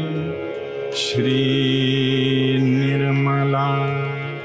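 A Sanskrit devotional mantra sung slowly to music, the voice holding long drawn-out notes; a new line begins about a second in, just after a brief hiss.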